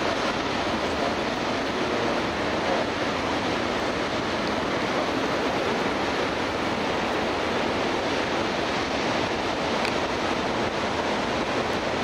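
Rough ocean surf breaking, a steady, unbroken rush of waves.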